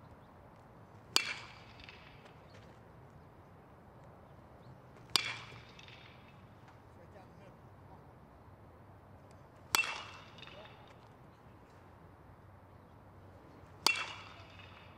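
Baseball bat hitting a pitched ball four times, about four seconds apart, each a sharp crack with a short ringing tail.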